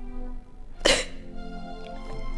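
A woman's single sharp sob about a second in, over a soft background film score of sustained tones.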